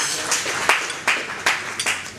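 A small audience applauding, with many quick, irregular hand claps.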